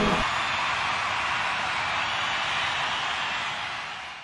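An acoustic guitar stops just after the start, then audience applause, a steady even clapping that fades out near the end.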